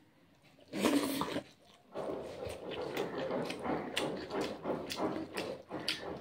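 Close-up wet chewing and lip-smacking of a mouthful of rice and curry eaten by hand, in a steady run of about three smacks a second from about two seconds in, after a short louder mouth sound about a second in.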